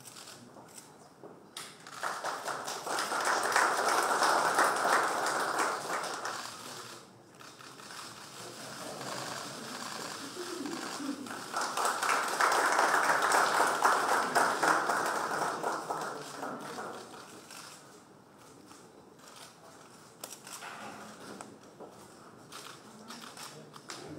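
Audience applauding in two swells, the first starting about two seconds in and the second about twelve seconds in, with fainter clapping between and scattered claps and clicks near the end.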